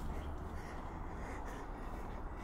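Steady low outdoor background rumble with a few faint, irregular ticks.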